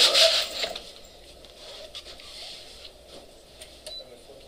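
Pull-down projection screen being lowered, its fabric and roller scraping and rattling, dying away about half a second in. Then quiet room tone with a few faint ticks.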